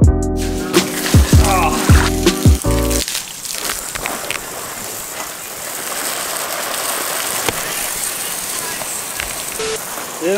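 Background music with a beat for about three seconds, then a steady hiss of water spraying from a garden hose fitted with a multi-balloon filler.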